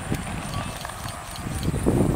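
Wind rumbling on the camera's microphone, with bumps from handling as the camera is moved, a louder one near the end, and faint voices behind.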